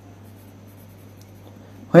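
Pen scratching faintly on a workbook's paper as a word is written, over a steady low hum; a man's voice starts right at the end.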